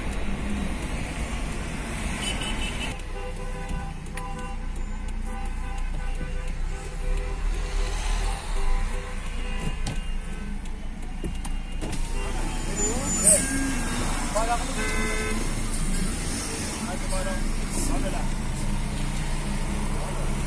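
Car horns honking over street traffic, with long held blasts through the first half and shorter repeated toots later, and people shouting.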